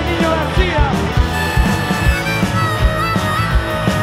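Live rock band playing an instrumental passage: electric guitar and bass over a steady drum beat, with bending guitar notes at first. From about a second and a half in, a wavering harmonica line comes in over the band.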